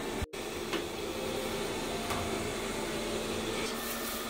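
Robit V7S Pro robot vacuum running with a steady motor hum as it cleans along a carpet edge. The sound drops out completely for a split second just after the start.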